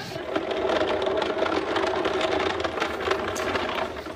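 A cube ottoman pushed across a hard floor, scraping and juddering in a steady rough rattle that stops abruptly just before the end.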